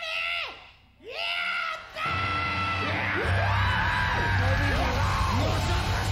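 Heavy rock music: a few yelled vocal phrases with almost no backing, then the full band with heavy bass comes in about two seconds in, the vocals carrying on over it.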